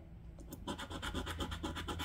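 A coin scratching the latex coating off a paper scratch-off lottery ticket: quick back-and-forth strokes, about eight a second, starting about half a second in.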